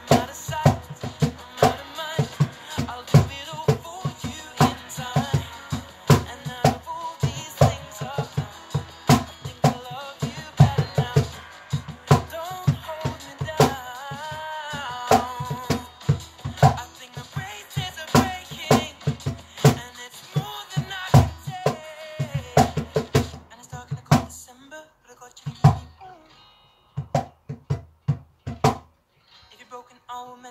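Cajón played by hand in a steady groove of deep bass thumps and sharper slaps, over a recorded pop song with guitar and singing. Near the end the music thins out to a few scattered strikes with short gaps between them.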